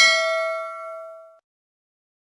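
A single bell ding sound effect ringing out, its several tones fading away by about a second and a half in.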